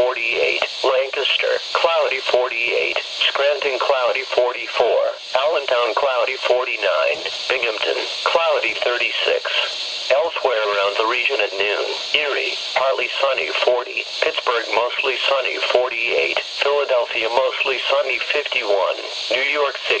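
NOAA Weather Radio announcer voice reading a list of local weather conditions (town, sky, temperature), played through the small speaker of a Midland weather radio, so the voice sounds thin with no low end.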